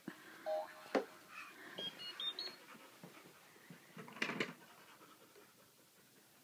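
A dog panting quietly, with a few soft knocks, a few brief high tones about two seconds in, and a short louder burst a little after four seconds.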